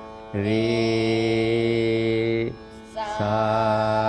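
Voices singing plain Carnatic swaras up the scale with no gamaka ornamentation, each note held steady for about two seconds. One note starts just after the beginning and a higher one about three seconds in, over a faint steady drone.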